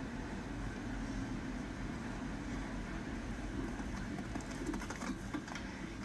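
Steady low rumble of arena ambience from a televised show-jumping broadcast, heard as the TV's sound recorded in the room, with a few faint clicks near the end.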